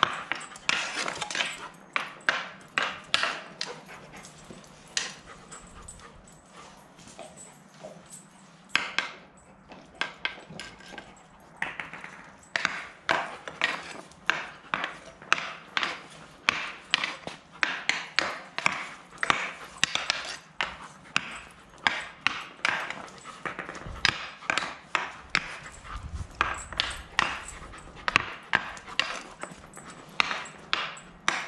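Hockey stick blade tapping and knocking against a hard hockey training ball and the concrete floor, many sharp clicks in an irregular run, several a second at times, with a dog panting.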